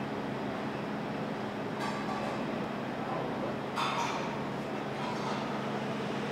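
Steady background noise with a constant low hum, broken by a few brief clinks, the sharpest about four seconds in.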